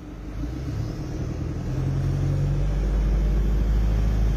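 Toyota car engine and road rumble heard from inside the cabin as the car drives along, getting louder over the first couple of seconds as it picks up speed, then running steadily.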